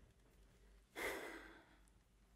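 A person sighs once, a breathy exhale about a second in that fades away, after a moment of near silence.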